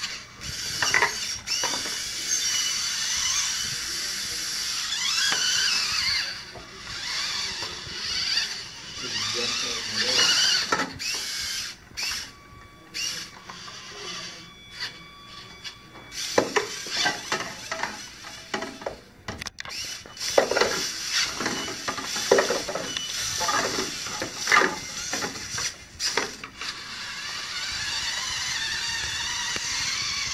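A VEX robot's small electric motors whining as it drives and runs its chain lift, with the drive gears and chain clicking and clattering throughout. A steady motor whine comes through plainly about midway.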